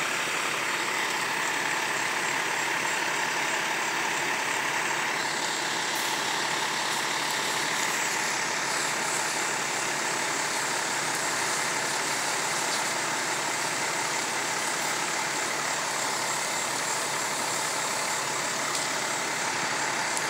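Fire truck diesel engines running steadily at the scene, a constant unbroken engine noise.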